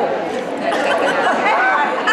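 Indistinct chatter of many people talking at once around the card tables.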